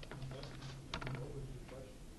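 Computer keyboard typing: a few scattered key clicks, the sharpest about a second in, over a steady low hum.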